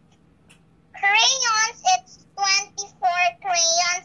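A child singing in a high voice, short sung notes starting about a second in.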